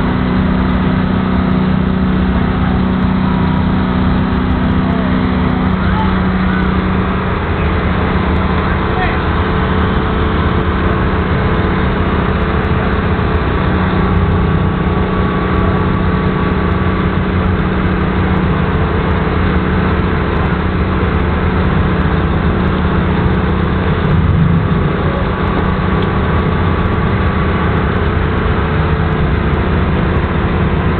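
Vehicle engine idling: a steady low hum with a few held tones, one of which drops away about six seconds in.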